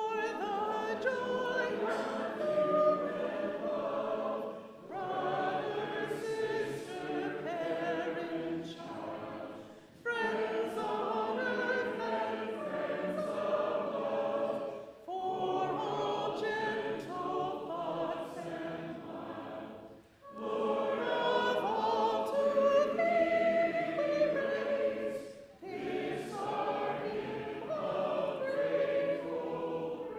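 A congregation singing a hymn together, in phrases of about five seconds with a short breath between each.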